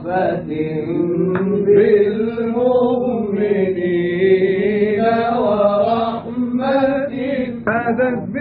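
A male Egyptian munshid sings a long, ornamented line of a tawshih (Islamic devotional chant) in an old live recording, the voice bending slowly up and down through held notes.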